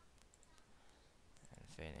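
Near silence with a few faint computer mouse clicks as a dialog is clicked through, then a man's voice starts near the end.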